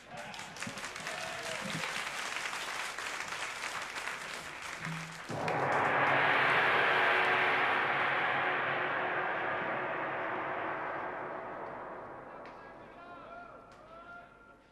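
Audience applause, then a sudden single stroke on a large gong about five seconds in, ringing with a bright shimmer over a low hum and slowly dying away.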